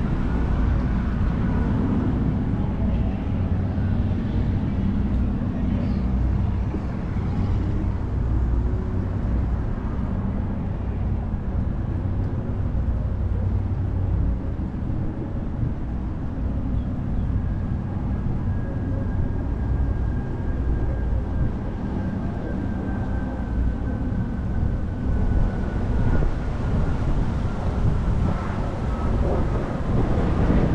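Steady low rumble of road traffic, with a faint high whine that slowly falls in pitch through the second half.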